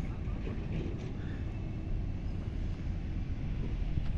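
A low, steady rumble of open-air background noise, with no distinct event standing out.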